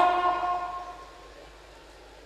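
The end of a long, held note of a man's melodic Quran recitation through a microphone and PA, trailing off and fading out over about a second. After that only faint, steady room noise remains.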